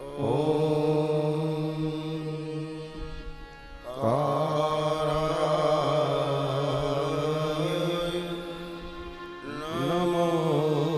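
A man chanting through a microphone in long, held phrases on a steady pitch: two phrases, the second starting about four seconds in.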